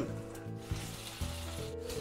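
Slices of smoked pork brisket frying in a stainless steel pan with a soft, steady sizzle, under quiet background music.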